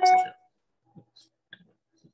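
A brief burst of a person's voice at the start, then a few faint clicks.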